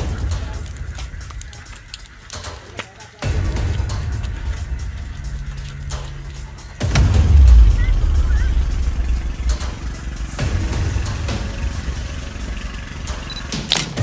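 A large fire burning through a goat pen: many crackling pops over a low rumble, louder from about seven seconds in.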